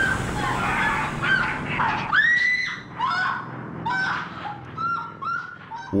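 A run of short honking bird calls, about two a second, growing quieter toward the end.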